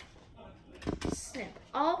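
Scissors snipping through a sheet of paper: one short, sharp cut about a second in.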